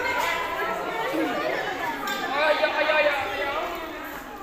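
Speech with background chatter from many people in a large hall; no other distinct sound stands out.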